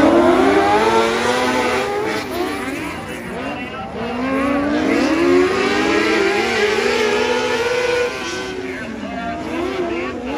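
Several small open-wheel dirt-track race cars' engines running together in a heat race, their pitches rising and falling out of step as the cars accelerate down the straights and ease off into the turns.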